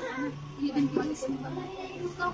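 Indistinct voices, with a young child's high, whining cry among them.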